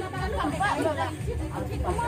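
Indistinct chatter: several people talking among themselves, with a steady low hum underneath.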